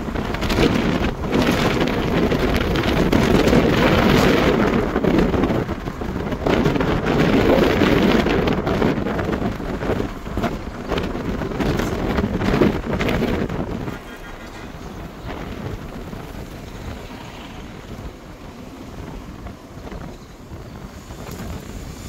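Wind rushing over the microphone and road noise inside a moving car in town traffic. It is loud and surging for about the first fourteen seconds, then drops to a quieter, steadier rumble.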